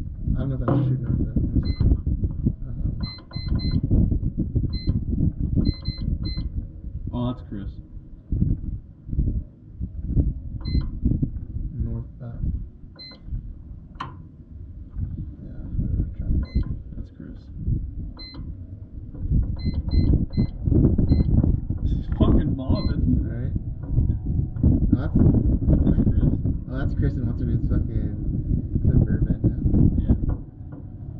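Inside the cab of an off-road race car driving over rough desert track: a loud, uneven rumble of engine and chassis that rises and falls, with short high electronic beeps in small clusters every few seconds.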